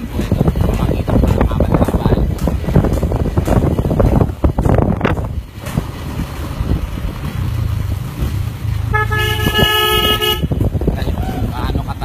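Wind rumbling on a handheld phone microphone along with handling noise. About nine seconds in, a single steady pitched toot sounds for about a second and a half.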